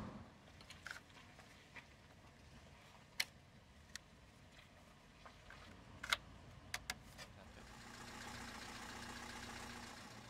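Faint, sharp plastic clicks and taps at the MGF's engine-bay fuse box as the power-steering (EPAS) fuse is pulled, a handful scattered through the middle. Near the end a low, steady engine hum comes in.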